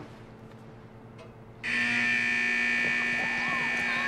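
An electric school bell buzzing loudly and steadily, starting suddenly about one and a half seconds in, with faint children's voices under it.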